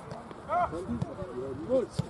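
Footballers shouting and calling to each other during play: a short yell about half a second in, and several more calls near the end.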